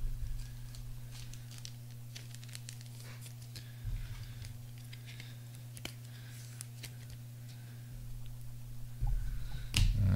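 Scattered light clicks and rustles of trading cards and plastic card holders being handled, thickest in the first few seconds, over a steady low electrical hum.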